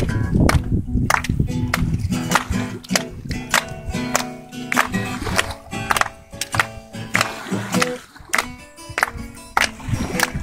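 Instrumental music: an acoustic guitar strummed in a steady rhythm, without singing.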